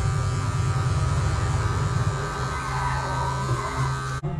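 Cordless electric hair clippers buzzing steadily while trimming a beard along the jaw.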